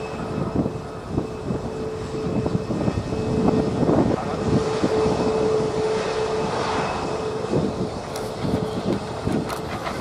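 Airbus A320neo's twin turbofan engines at climb power as the airliner climbs away after takeoff: a continuous rumble with irregular crackle and a steady hum underneath.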